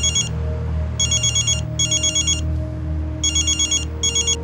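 Mobile phone ringing with a trilling electronic ring tone: pairs of short bursts, a new pair about every two seconds, the classic double ring of a telephone.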